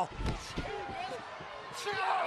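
A thud of a wrestler's impact in the ring just after the start, then low arena crowd murmur.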